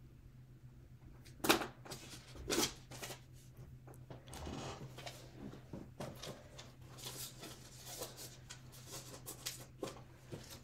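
Handling sounds of objects on a desk close to the microphone: a scatter of light clicks and rustles, with two sharper knocks about one and a half and two and a half seconds in, over a steady low electrical hum.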